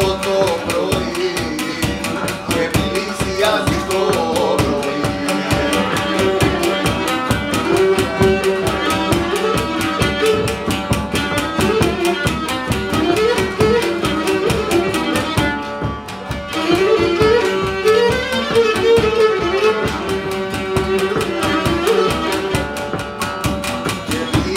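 Live Cretan syrtos: a bowed Cretan lyra carries the melody, over a laouto strumming a steady rhythm and a drum beating time. The music thins briefly about two-thirds of the way through, then picks up again.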